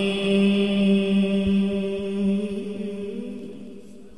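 A male Quran reciter's voice holds one long, steady melodic note of recitation. Near the end the pitch wavers and the note fades away.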